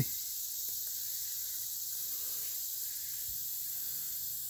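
Steady high-pitched hiss of outdoor background noise, even and without distinct events.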